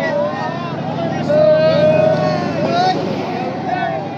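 Crowd of men shouting and chanting slogans, many voices overlapping and some held in long calls, over a steady low rumble.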